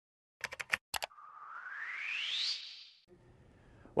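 Synthesized news intro sting: a quick run of sharp clicks, four then two more, followed by a whoosh that sweeps upward in pitch and fades out about three seconds in.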